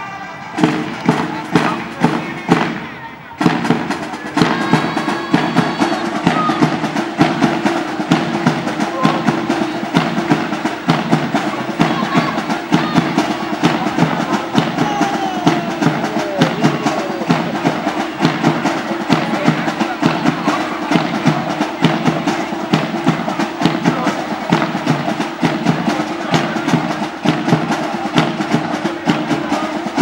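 Marching drums, a snare among them, beating a steady fast rhythm, thickening into a continuous beat about three seconds in.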